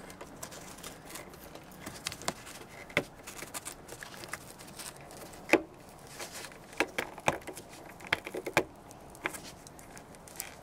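Plastic clicks and knocks as an Infiniti G35 sun visor's mounting bracket and its retaining clip are worked loose from the headliner. The clicks are irregular, the loudest about halfway through, with several more near the end.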